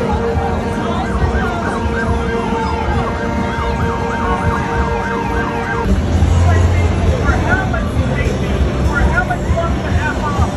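Emergency vehicle siren in a fast yelp, sweeping up and down several times a second over a steady tone and street noise. It cuts off abruptly about six seconds in, leaving crowd and traffic noise.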